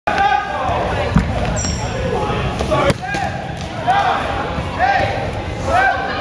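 Dodgeball game in a gym: rubber balls striking with two sharp impacts, about a second in and just before three seconds, over players' voices in a reverberant hall.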